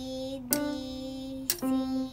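Single notes played one at a time on a portable electronic keyboard, C and D in a beginner's exercise. A new note starts about every second, each struck sharply and held until the next.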